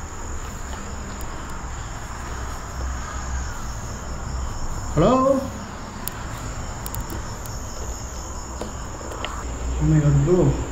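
Crickets chirping steadily in a night-time field, with a brief voice-like call about five seconds in.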